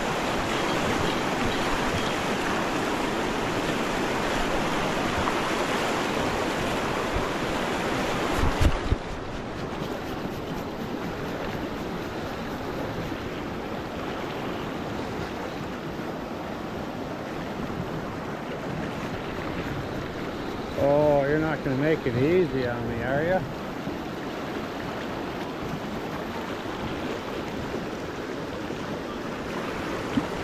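Fast river rapids rushing steadily over rocks. About nine seconds in a sharp thump, after which the rush sounds duller; a person's voice is heard briefly around the twenty-second mark.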